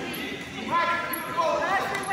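A raised voice shouting from the side of a wrestling mat, likely coaching, over thuds of the wrestlers' feet and bodies on the mat.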